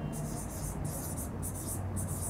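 Marker pen writing on a whiteboard: four short scratchy strokes as letters are written.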